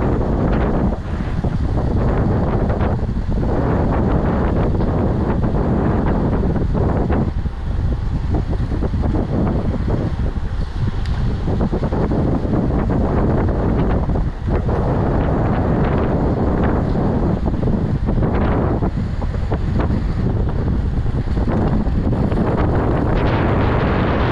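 Wind rushing over the camera microphone of a moving road bike at speed: a loud, steady, buffeting roar that rises and falls a little with the gusts.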